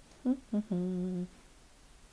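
A woman's brief hummed, closed-mouth laugh: two quick short notes and then one held, steady note of about half a second.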